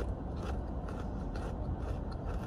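Crisps being chewed close to the microphone: a few faint, irregular crunches over a steady low rumble.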